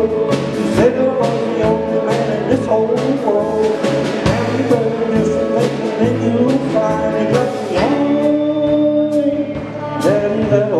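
Live country band playing an instrumental passage: electric guitars over a walking bass line and a steady drum beat, with a few notes bent upward.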